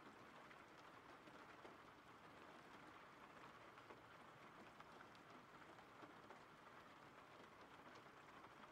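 Faint, steady rain from a rain-sound ambience track.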